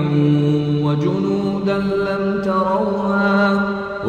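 Quranic recitation (tajweed), a single voice chanting in long drawn-out melodic notes, the pitch stepping up about a second in and then held steady.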